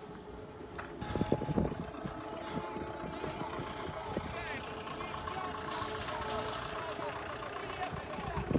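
Indistinct voices of people talking outdoors over a steady vehicle engine hum, with louder low rumbling on the microphone a little over a second in.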